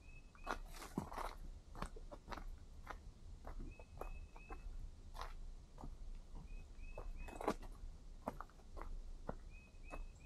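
Faint footsteps of a hiker on a dry dirt trail, crunching irregularly on leaf litter and twigs. Short high chirps come in runs of three or four about every three seconds.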